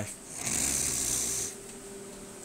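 A man's breath into a close microphone: one hissy breath about a second long, with a low rumble of air on the mic, over a faint steady hum.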